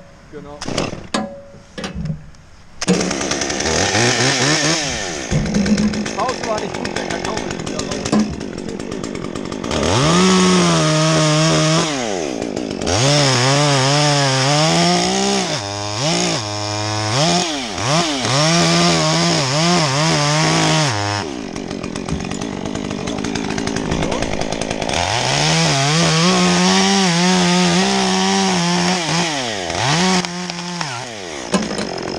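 Small Stihl top-handle chainsaw cutting through a tree trunk. It throttles up about three seconds in, and the engine pitch rises and falls repeatedly as the chain bites and is eased off, with a short lull in the middle.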